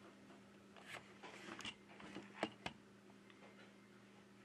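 Faint handling of a smartphone and its USB charging cable: light rustles and a few small clicks in the middle, the sharpest about two and a half seconds in, over a steady low hum.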